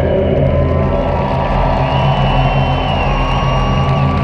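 Steady din of a stadium crowd, with a few long held musical notes that slide slightly in pitch, most likely from the waiting marching band.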